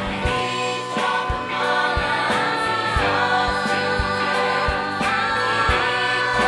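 Musical theatre ensemble singing together with band accompaniment, over a steady beat of about two thumps a second.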